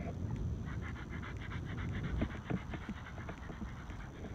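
German Shepherd dog panting, quick and even, close to the microphone.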